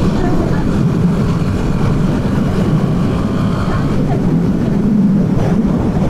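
KTM Duke 390 single-cylinder engine running at highway speed, mostly covered by loud, steady wind rush on the mounted camera's microphone.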